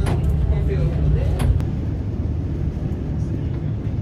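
Steady low rumble of a roughly 110-year-old Saltsjöbanan electric railcar running, heard from inside its wooden driver's cab. Two sharp clicks stand out in the first second and a half.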